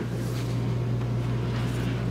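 Steady low hum over an even hiss, with no distinct events: the background tone of the camper's interior.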